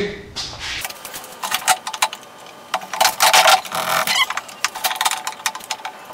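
Metal clattering and scraping of a wood lathe's tool rest being repositioned and locked, an irregular run of sharp clicks and rattles with the lathe switched off.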